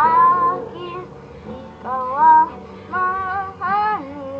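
A boy singing a song in Filipino over his own acoustic guitar, in several short phrases that slide up and bend in pitch.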